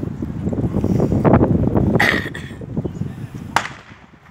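Wind buffeting the phone's microphone in low rumbling gusts, with a single sharp crack near the end.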